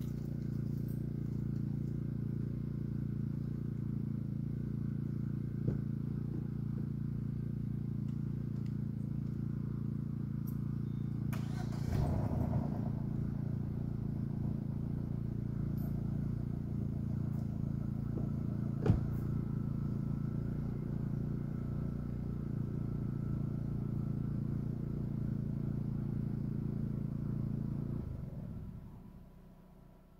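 A small engine running steadily, a low even hum, with a short rustle about twelve seconds in and a single sharp click a little later. The hum fades away over the last couple of seconds.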